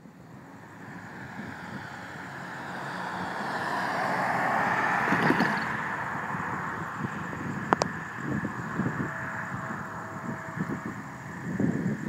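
A passing road vehicle's tyre and road noise swells for about four seconds and then slowly fades away. A single sharp click comes near the end.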